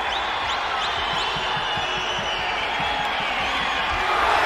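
Steady open-air background noise on a soccer pitch, with faint, distant voices of players.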